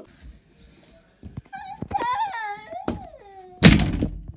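A child's drawn-out wailing cry, high and sliding down in pitch, followed near the end by a single loud thud.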